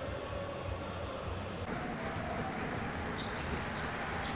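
Steady hum of an arena crowd. In the second half a basketball is dribbled on a hardwood court, with a few short, sharp high sounds near the end.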